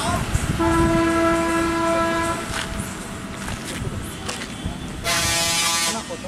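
Lorry horns at a hairpin bend on a mountain road: one steady horn blast of under two seconds early on, then a louder, harsher blast of about a second near the end, over a low diesel engine rumble.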